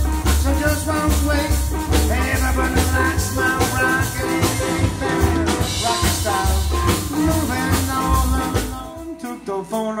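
Live blues-swing band playing an instrumental passage: upright bass pulsing on the beat under acoustic guitar and drum kit. About nine seconds in the bass drops out and the music goes quieter for a moment.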